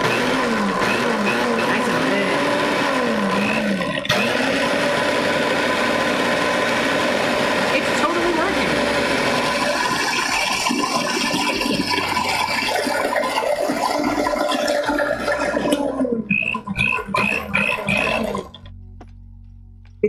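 Countertop blender with a glass jar running at full speed, churning a thick purple potato and coconut milk mix. Its motor hum wavers in pitch for the first few seconds as it works through the thick load, then runs steadily. It goes choppy and cuts off about eighteen seconds in.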